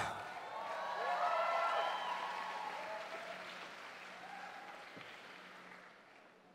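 Audience applauding with a few whoops and cheers, fairly faint, dying away over the first few seconds.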